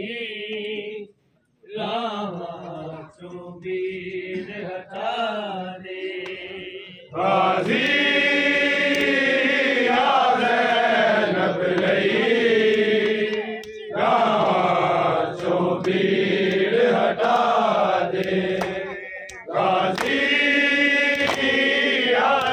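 Men's voices chanting a noha, a Shia mourning lament. It is moderate at first, with a brief break about a second in, then much louder sustained chanting from about seven seconds on.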